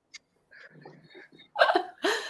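Laughter over a video call: soft, broken, breathy laughs, then a louder burst of laughing near the end.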